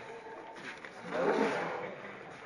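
A person's voice, louder for most of a second from about a second in, with no words made out.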